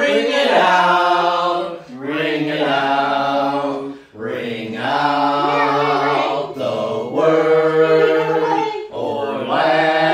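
Unaccompanied (a cappella) hymn singing by several voices, long held notes in phrases with short breaks between them about every two to three seconds.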